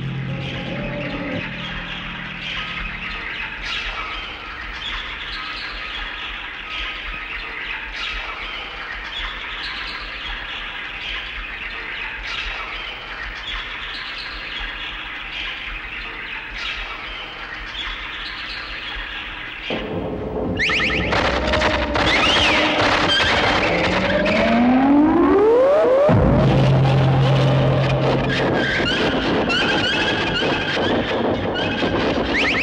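Soundtrack of strange, collage-like film sound. For about twenty seconds a busy high-pitched texture pulses about every two seconds. It then changes to squeals and rising and falling glides over a low hum.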